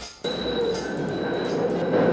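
Boston rapid transit subway car running: a steady rumble of wheels on rails with several steady whining tones over it, cutting in abruptly about a quarter second in.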